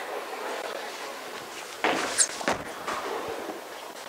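A bowler's delivery of a Storm Super Nova bowling ball. Midway through there is a short high squeak and a sharp thud as the ball is laid onto the lane, then the ball rolling away down the lane.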